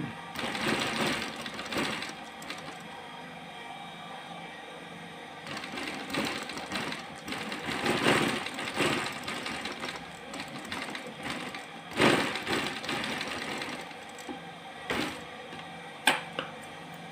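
Sewing machine stitching quilted faux-leather bag panels in a few short runs with pauses between.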